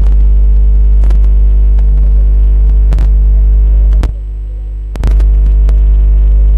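Loud, steady electrical mains hum in the audio feed, with scattered clicks and crackles. The hum drops away for about a second around four seconds in, then returns.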